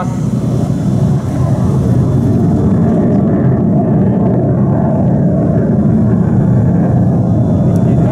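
A large engine running steadily with a low, even rumble, and no gunfire.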